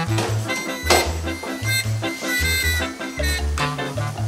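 Background music with a steady, repeating bass line and beat.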